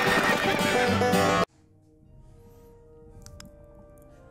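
Loud intro music that cuts off abruptly about one and a half seconds in, followed by faint, sustained music.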